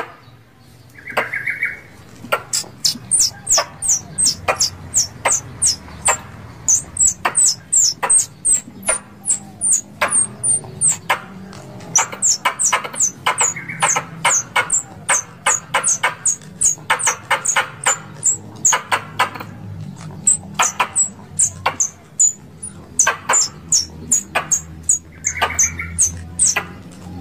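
Plantain squirrel (tupai kelapa) call used as a hunting lure: a rapid series of sharp, high chirps, each dropping in pitch, about three to four a second in runs with short breaks. A few harsher, lower calls come in among them.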